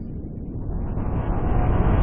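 Intro sound effect: a noisy rumbling whoosh that swells steadily louder and brighter, building toward a hit.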